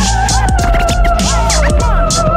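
DJ turntable scratching, short swooping cuts over a hip hop beat with strong bass and a steady held tone.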